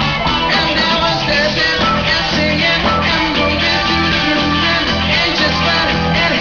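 Live rock band playing at a steady loudness: electric bass, electric guitar and drum kit, with a man singing lead.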